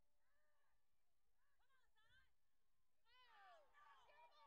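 Faint, distant shouting from people at a football game: a few drawn-out yells that rise and fall in pitch, some overlapping. They get louder near the end as the play gets underway.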